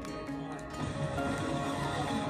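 Orchestral film score from the episode playing, with held notes and scattered sharp sound effects over it.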